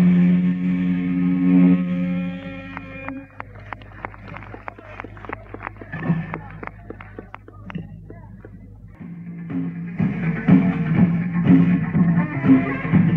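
Live rock band on a lo-fi mono cassette recording: a held chord rings out and fades. Several seconds of scattered sharp clicks follow. After a short gap the band starts the next song with guitar and drums near the end.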